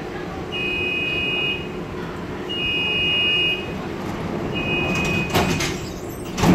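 SkyTrain suspension railway door-closing warning: a two-tone beep sounds three times, then the sliding doors shut with a clatter near the end, over the car's steady low hum.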